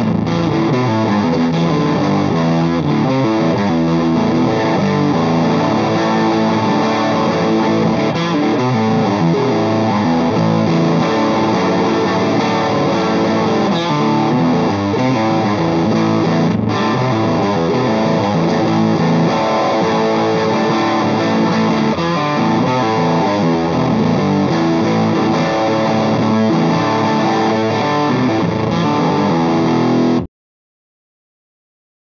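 Heritage H535 semi-hollow electric guitar played continuously through a Lovepedal Blackface Deluxe overdrive pedal into a Marshall JTM45 amp, giving a compressed, chimey, Fender-like overdriven tone. The playing stops abruptly at the very end.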